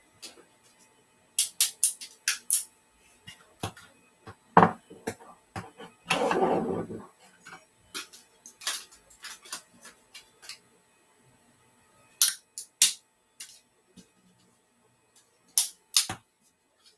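Clicks, knocks and a scraping slide of about a second, around six seconds in, from a hard-drive tray being unlatched and pulled out of a QNAP NAS.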